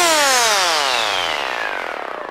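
Closing synth note of an electro house mix: a single rich synthesizer tone gliding steadily down in pitch while fading out, a pitch-drop ending after the beat has stopped.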